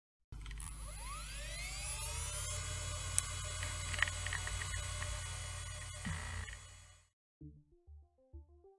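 Logo-sting sound effect of an electrical power-up: a low electric hum with a rising whine over the first two seconds, two sharp crackling clicks a few seconds in, fading out near the end. A synthesizer melody of stepping notes begins just before the end.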